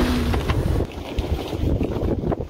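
Wind buffeting the microphone outdoors: a steady low rumble and rustle with no clear tone, plus a short hum at the very start.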